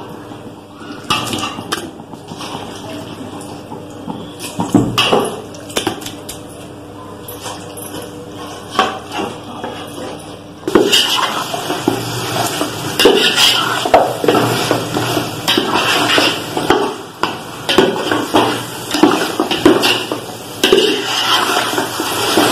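Metal spoon scraping and clinking against an aluminium pot as chicken is stirred into fried masala. It starts as scattered clinks, then from about halfway through turns into loud, continuous scraping.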